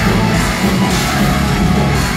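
A live band playing heavy rock at full volume, dense and continuous with a driving beat.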